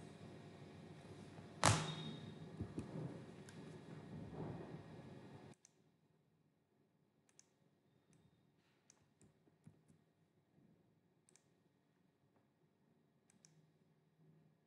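Scattered computer mouse clicks, one louder click about a second and a half in. A steady background hiss underneath cuts off suddenly about five and a half seconds in.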